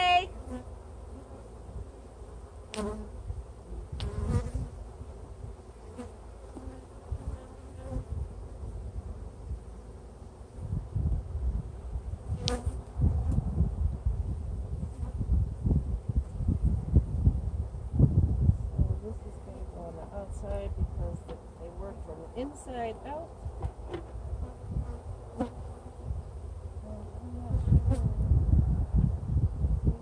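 Honeybees buzzing in flight around an open hive box while a colony is being put into it, the buzz rising and falling as bees pass near. Low rumbling swells come and go, with a few light knocks early on and about halfway.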